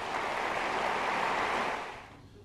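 An audience applauding: a steady patter of many hands clapping, which fades away near the end.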